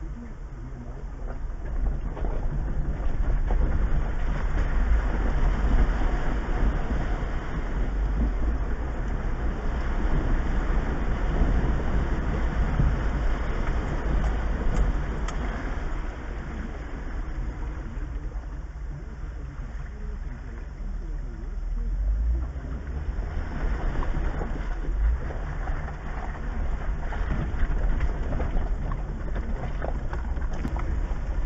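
Jeep Wrangler crawling slowly along a wet, rocky dirt trail, heard from inside the cab: a steady low engine and drivetrain rumble with tyre and road noise that swells and eases, quieter for a few seconds past the middle.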